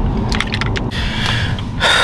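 A person drinking from a plastic shaker bottle: gulps and liquid sloshing, ending in a quick sharp breath out.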